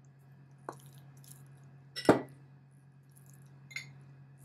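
Metal spoon stirring a soft mash in a glass bowl, with light clinks against the glass and one sharp clink about two seconds in.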